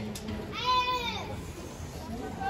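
A player's long, drawn-out shout on a football pitch, rising and then falling in pitch, starting about half a second in and lasting under a second.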